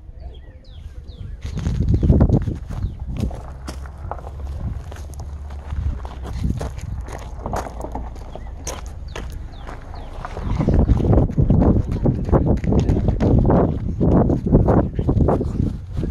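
Footsteps crunching on gravel, with the phone rubbing against clothing and wind buffeting the microphone in heavy rumbling bursts, loudest about two seconds in and again from about ten seconds on.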